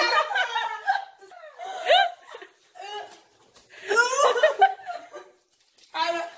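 Teenagers laughing in several short bursts with quiet gaps between, a few spoken sounds mixed in.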